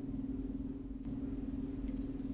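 A steady low hum that pulses faintly. A faint high tone joins it under a second in.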